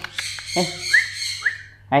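Patagonian conure giving a harsh squawk in the first half second, followed by two short rising chirps.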